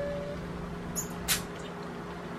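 A held, closed-mouth hum that stops shortly after the start, then a faint click and a brief crackle of a plastic ice-pop tube being twisted and bitten open.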